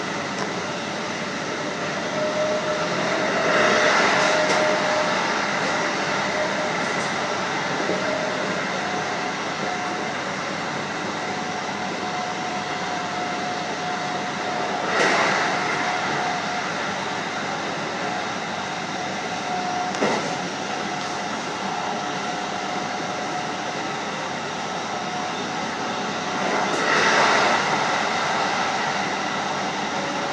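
Running noise of a JR Hokkaido 711 series electric train on the move, heard from the driver's cab: a steady rumble and hiss of wheels on rail, with a faint tone that rises a little in pitch. The noise swells louder three times, and there is a sharp click about twenty seconds in.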